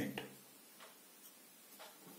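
Faint, evenly spaced ticks about a second apart against near silence.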